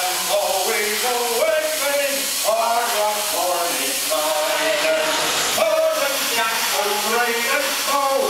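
A crowd of voices singing together, holding notes that move up and down in steps, over a steady hiss of steam venting from the Man Engine puppet.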